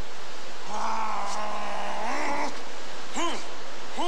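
A man's martial-arts shouts (kiai): one long held yell starting about a second in and lasting under two seconds, then a short sharp shout a little after three seconds in.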